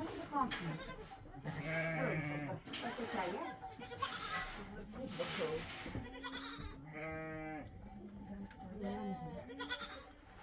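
Young goat kids bleating, a string of calls, with a long, wavering bleat about seven seconds in.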